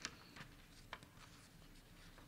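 Near silence with a few faint, crisp rustles and ticks of paper being handled at a lectern microphone, the sharpest right at the start and two more within the first second.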